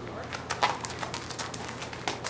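Hooves of a Missouri Fox Trotter gelding walking on packed dirt and gravel: a run of irregular clops and scuffs that starts about a third of a second in, the loudest just past half a second.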